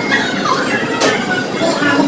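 Busy restaurant din: steady overlapping background chatter from other diners, with one sharp clink about a second in.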